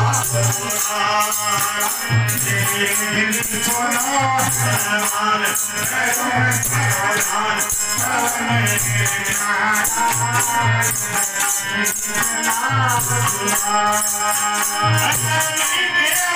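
Live band music: a wavering keyboard melody over a continuous shaker-like rattle and regularly recurring low drum beats.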